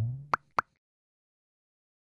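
Cartoon sound effects for an animated logo: the tail of a loud effect dies away, then two short pops come about a quarter second apart within the first second.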